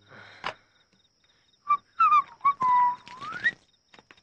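A person whistling: a few short notes, then a long held note that slides upward at the end, over a steady chirring of crickets.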